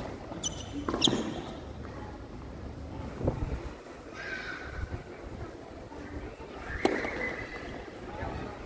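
Tennis balls struck and bouncing on a hard court: a sharp racket hit about a second in, then single knocks a few seconds apart, with short high squeaks of tennis shoes on the court surface.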